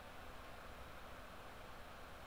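Faint steady hiss with a low hum underneath: the recording's background noise, with no distinct sound event.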